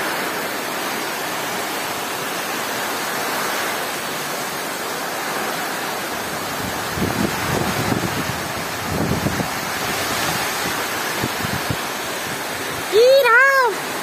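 Heavy rain pouring down, a steady dense hiss, with a few low rumbles about halfway through. A voice breaks in briefly near the end.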